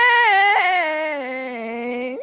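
A woman singing one long held note, the last word of a sung line. Her pitch climbs slightly, wavers about half a second in, then slides down and settles lower.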